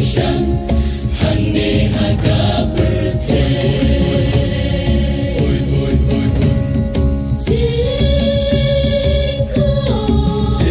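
A choir singing with instrumental accompaniment and a steady beat, holding long notes through the middle and the second half.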